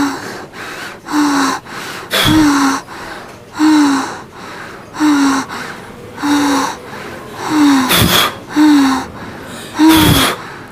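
A woman breathing hard in rhythmic gasps, about one every second and a quarter, each with a short falling voiced sound. A few sharp thumps fall among them, about two seconds in and again about eight seconds in.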